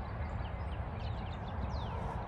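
Wind buffeting the microphone in a steady, fluttering rumble, with small birds calling in quick, high, descending chirps from about a second in.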